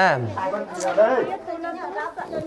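Only speech: people talking indistinctly, with a voice falling in pitch right at the start.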